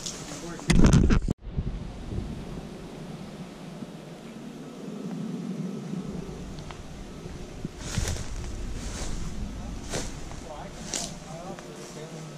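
A loud low rumble lasting about half a second near the start, cut off abruptly. Then steady faint outdoor background noise with faint voices and a few light clicks.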